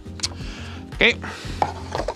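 Light clicks and knocks of a hard plastic DJI FPV Motion Controller and its cardboard box being handled on a wooden table: one sharp click early, then a soft rustle with small taps in the second half. Background music with a steady low beat plays underneath.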